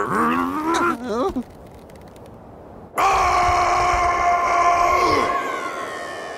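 Cartoon character's voice: a wavering, snarling growl that stops about a second and a half in. After a short pause comes a long, steady, low bellow held for about two seconds that drops in pitch as it ends.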